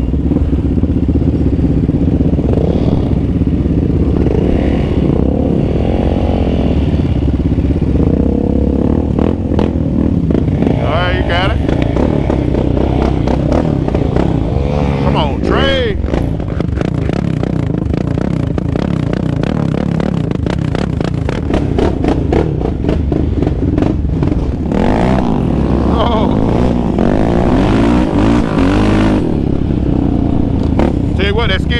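Yamaha Raptor 700R sport quad's single-cylinder engine riding a dirt trail, revving up and down under throttle with several sharp revs, the biggest about halfway through and again near the end. Rattles and knocks from the machine over rough ground run through the second half.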